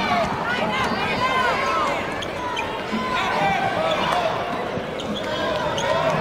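Basketball dribbled on a hardwood court, with sneakers squeaking in short chirps as players cut and defend, over a steady arena crowd murmur.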